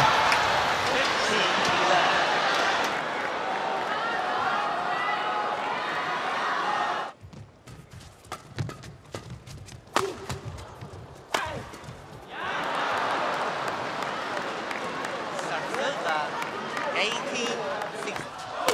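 Badminton arena crowd cheering and shouting, which then falls quiet for a rally of quick, sharp racket strikes on the shuttlecock. The cheering rises again after the rally.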